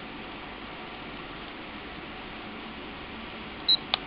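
Steady low hiss, then near the end a short high-pitched beep and a sharp click from a handheld multifunction anemometer as a button is pressed to step to its next function.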